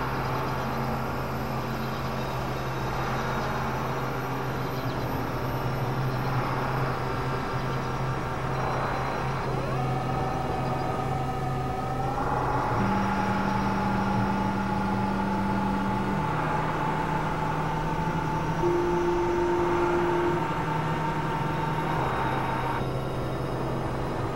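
Experimental synthesizer drone: a steady low hum under a noisy wash, with held tones that step to new pitches every few seconds. A higher tone comes in about ten seconds in, glides up slightly, then holds until near the end.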